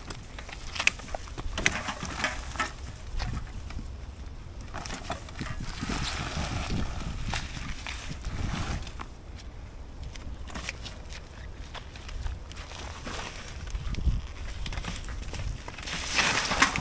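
Footsteps and a loaded pushcart rolling down a dirt track, with irregular knocks and scuffs and a low rumble throughout.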